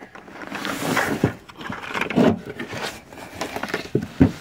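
Gloved hand scraping wet shingle grit and mud along a metal rain gutter and scooping it out, with rough scraping and a few short knocks.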